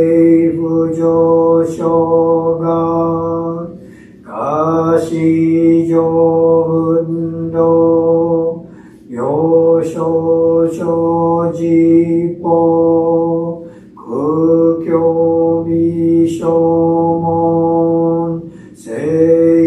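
A male Jodo Shinshu priest chanting a Buddhist sutra on one steady, held pitch, in four phrases of about four seconds each with short breaths between them; each phrase slides up into the note.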